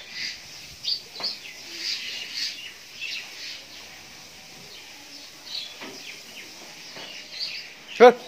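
Small birds chirping and tweeting in many short, high calls, scattered throughout.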